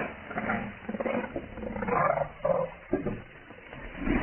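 Leopard growling: a run of short, rough growls and snarls, five or six in quick irregular succession.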